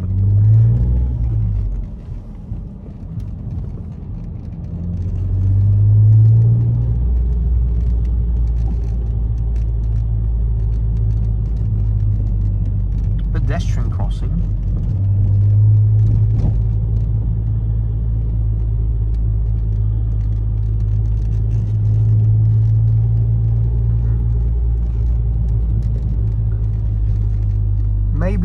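Ford Mondeo ST220's 3.0 V6 engine and Milltek exhaust droning low inside the cabin as the car drives. The engine note swells about five seconds in, then settles into a steady cruise with a few gentle rises.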